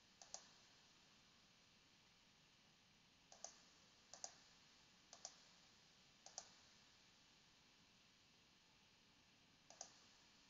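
Faint computer mouse clicks: six of them, each a quick press-and-release double tick, spread unevenly. One comes right at the start, four come between about three and a half and six and a half seconds, and one comes near the end, over a quiet hiss.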